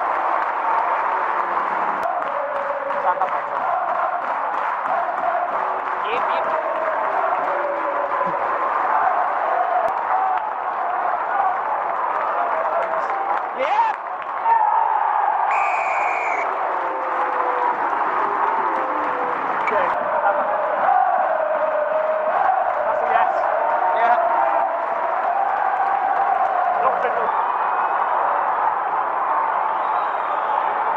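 Stadium crowd at a rugby league match: a steady hubbub of many voices from the stands, with a brief dip about fourteen seconds in.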